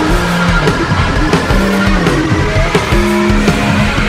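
Rock band playing: distorted electric guitar holding and changing notes over drums.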